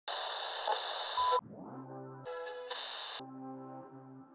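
Channel intro sting: a burst of radio-static hiss with a brief beep near its end, then a held synthesizer chord, cut by a second short burst of static around three seconds in before the chord returns.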